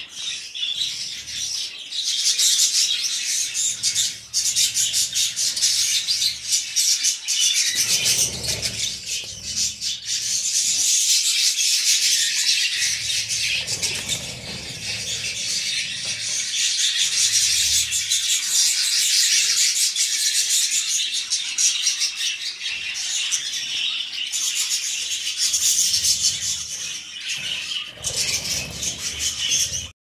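A flock of budgerigars chattering and chirping continuously, a dense, high-pitched warbling chatter of many birds at once.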